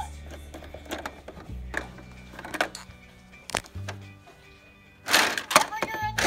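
A simple electronic tune playing from a plastic lights-and-sounds toy tower, its low notes changing a couple of times, with several sharp plastic clicks as the tower's elevator is worked. A louder burst of sound comes near the end.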